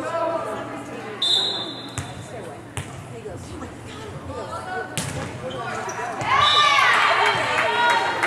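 A referee's whistle blows one short steady blast about a second in, the signal to serve, followed by a few sharp volleyball bounces on the wooden gym floor. Near the end several girls' voices shout out together, over steady chatter echoing in the gym.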